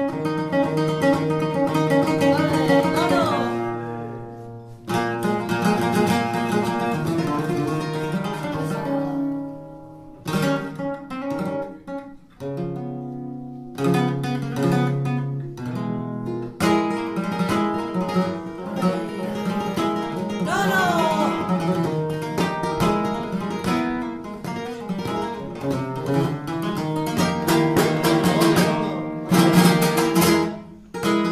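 Flamenco acoustic guitar playing in seguiriya, single-note runs and strummed chords in phrases with short pauses between them.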